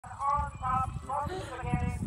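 Indistinct voices of people talking nearby, with an uneven low rumble underneath.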